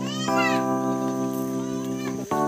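Background music of held, organ-like keyboard chords, with a cat meowing once at the start, its pitch rising then falling.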